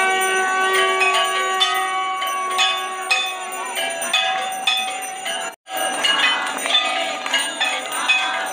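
Temple bells rung continuously for an aarti: many overlapping strikes, some tones ringing on for several seconds. The sound cuts out for an instant about five and a half seconds in, then the ringing carries on.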